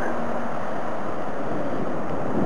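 Wind blowing on the microphone: a steady, even rushing noise.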